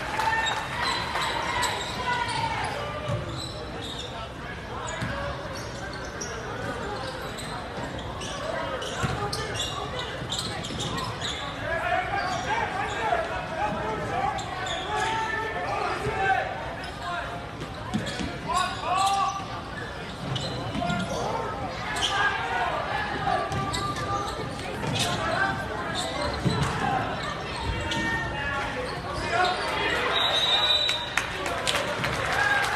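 A basketball bouncing on a hardwood gym floor during live play, echoing in a large gym, with spectators' voices and shouts throughout.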